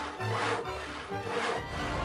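Hand saw cutting with long back-and-forth strokes, about two or three a second, over background music.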